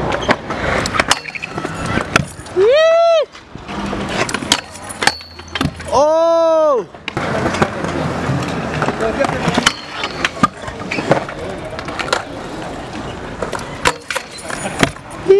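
Stunt scooter wheels rolling on skatepark concrete, with repeated sharp clacks of landings and rail contacts. Two loud, drawn-out shouts rise and fall in pitch, about three and six seconds in.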